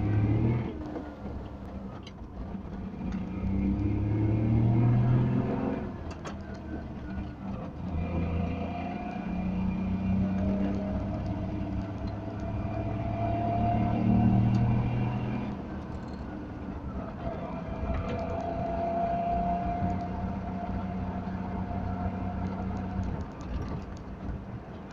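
Wartburg 311's three-cylinder two-stroke engine heard from inside the cabin while driving, pulling up in pitch as the car accelerates and dropping back at each gear change, with a thin rising whine alongside.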